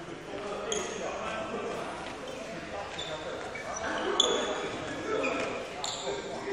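Badminton footwork on an indoor court floor: sneakers squeaking sharply several times and feet thudding, echoing in a large hall.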